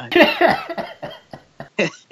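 A man laughing heartily: a loud burst of laughter at the start, breaking into a string of short bursts that fade over the next second or so.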